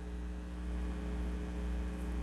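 Steady low electrical mains hum with a stack of even overtones, unchanging throughout.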